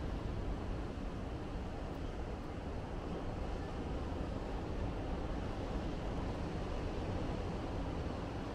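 Steady, low outdoor rumble of distant ocean surf, with no distinct events.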